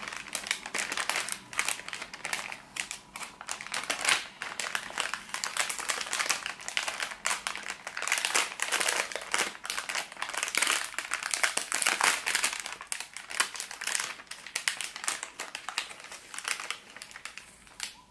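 A clear plastic bag crinkling as hands open it, with foil sachets rustling inside, in a dense, irregular run of crackles that swells and fades as the contents are handled.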